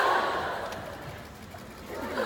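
Audience laughter in a large hall, fading away over about the first second.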